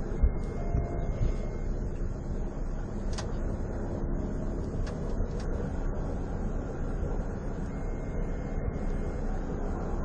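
Steady low rumble of a patrol car idling, heard from inside its cabin, with a few faint clicks.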